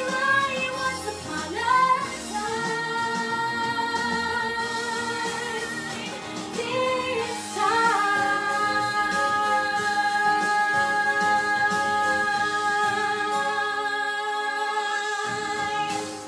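A woman singing a pop song over a backing track, holding long sustained notes; the final note is held for about eight seconds before the song ends, near the close.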